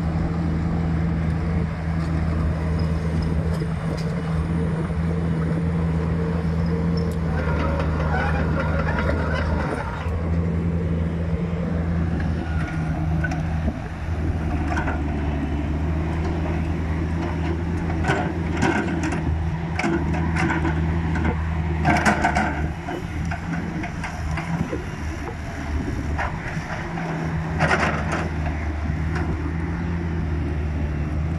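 Kubota KX161-3 mini excavator's diesel engine running steadily under hydraulic load as the boom and arm are worked, its note dipping briefly a few times. A series of sharp clanks and knocks comes in the second half.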